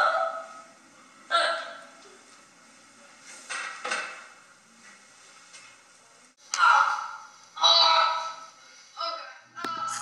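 A person's voice making about six short, separate cries or exclamations, each around half a second long, with quiet pauses between them.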